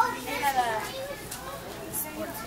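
Soft, indistinct voices with a child's voice among them, and a brief click right at the start.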